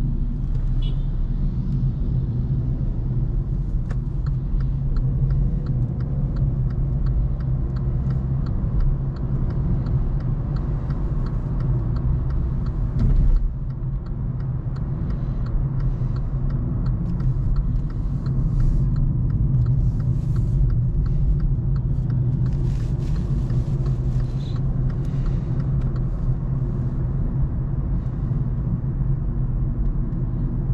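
Cabin sound of a 2022 Kia Cerato being driven: a steady low rumble of engine and tyres on the road, with a brief thump about 13 seconds in.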